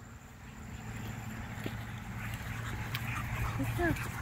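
Quiet outdoor background with faint dog sounds, slowly growing louder.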